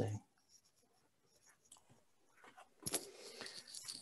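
Near silence of room tone, broken about three quarters of the way in by a single sharp click, followed by faint low noise.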